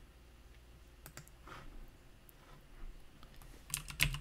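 A few faint, isolated clicks of computer keys being pressed, with a somewhat louder click near the end.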